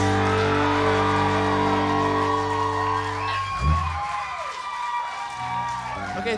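A rock band's final chord ringing out on electric guitar and bass, cut off about three and a half seconds in. The audience then cheers and whoops.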